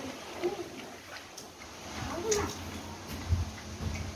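A dog eating from a metal food bowl, with a few sharp clicks and two brief vocal sounds about half a second and two and a half seconds in. A low rumble runs through the second half.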